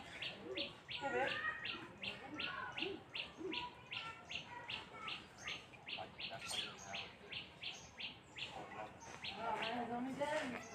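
Birds calling: a short high chirp repeated steadily about three times a second, with other chirps and whistles over it.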